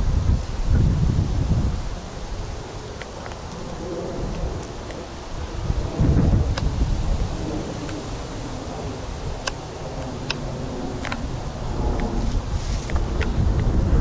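Wind buffeting an outdoor camcorder microphone, a low rumble that comes in gusts, strongest about a second in and again around six seconds in, with a few faint clicks.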